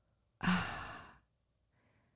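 A person's sigh: one breathy exhale that opens with a short voiced "uh" and fades out over about a second, a hesitant sigh before answering a question.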